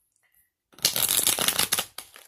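A deck of tarot cards being shuffled: one burst of rapid card flutter lasting about a second, starting a little under a second in and stopping abruptly.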